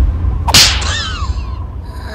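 A cartoon whip-crack sound effect about half a second in, as the caterpillars' long tongues lash out, followed by a few quick falling squeaky cries. A steady low rumble runs underneath.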